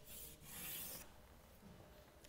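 Chalk writing on a blackboard: two short, faint strokes in the first second.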